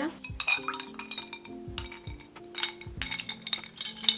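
Metal spoons and ice cubes clinking against a drinking glass of ice water: a quick series of sharp, ringing clinks, over soft background music.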